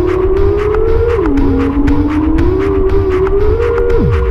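Electro music built from processed loops sampled from old-school electro records: a wavering, siren-like tone glides up and down in pitch over a steady beat with quick, evenly spaced ticks. The tone drops about a second in and falls away sharply at the very end.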